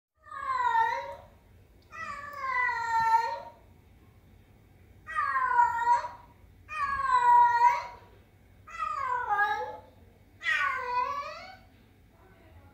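A domestic cat meowing six times, long drawn-out meows of about a second each, the pitch dipping and then rising within each call.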